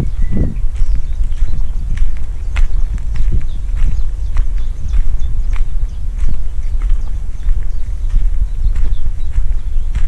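Footsteps crunching on a gravel path, about two steps a second, over a steady low rumble.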